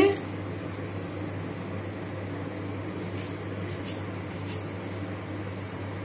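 Steady low background hum with an even wash of room noise; no distinct event stands out.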